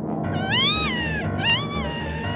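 Two drawn-out wailing cries, each rising then falling in pitch, the first longer than the second, over a low pulsing music bed.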